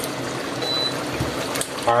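Chicken and chickpea stew bubbling steadily in its pot, with one short high beep a little over half a second in from the glass hob's touch control as the heat is switched off.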